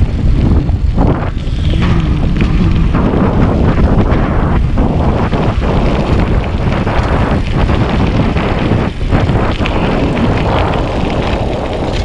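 Wind buffeting the camera microphone and tyres on rough asphalt as a mountain bike coasts fast downhill: a loud, steady low rush with short knocks from bumps in the road.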